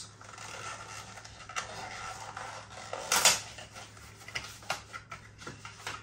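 Cardboard four-pack box of beer cans being opened by hand: scraping and rustling of the cardboard, with a louder tear about halfway through and a few light knocks.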